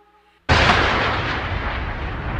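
A held music chord fades out, then about half a second in a sudden loud cinematic explosion sound effect hits. It carries on as a deep, slowly fading rumble.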